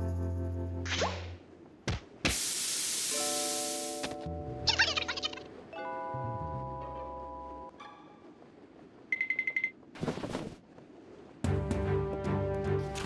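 Cartoon score of held notes and short phrases, broken by sound effects: a rising swish about a second in, a long hiss from about two to four seconds, a rattle near five seconds, a rapid ticking trill near nine seconds and another swish near ten seconds. Fuller music comes back near the end.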